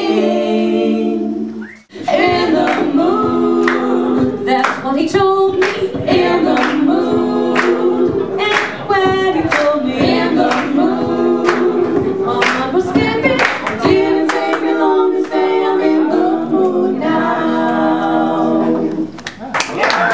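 Female vocal trio singing close harmony, three voices moving together in parallel lines with quick, clipped syllables. The singing breaks off briefly about two seconds in and fades just before the end.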